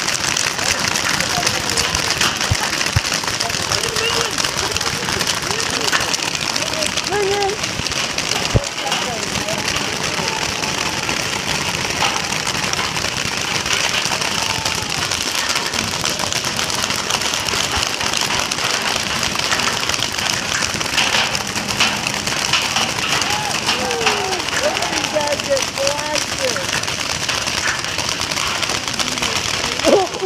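Massed fire from many paintball markers across the field: a dense, unbroken crackle of shots with no let-up.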